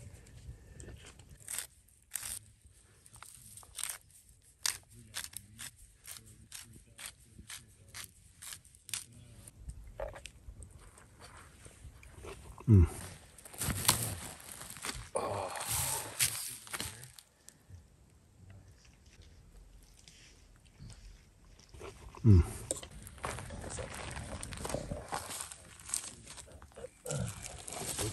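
A hand-twisted spice grinder clicking in a quick irregular run over a plate of food, then a man eating, with chewing and crunching and two short grunts that drop in pitch.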